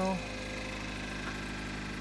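Four-cylinder engine of a 2006 Toyota Corolla idling, a steady even hum.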